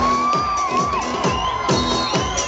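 Electronic trance dance track played loud over a festival PA, with a steady four-on-the-floor kick drum about two beats a second and a held, wavering high tone over it. Crowd noise and cheering run underneath.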